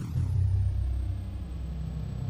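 Logo-sting sound effect: a deep rumble that starts suddenly and holds steady, with a faint high tone gliding down at the start.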